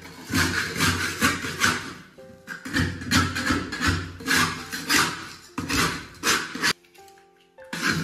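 Metal spatula scraping rice crust off a large iron wok, in quick repeated rough strokes that come in runs, with a pause a little before the end. Background music with held notes plays underneath.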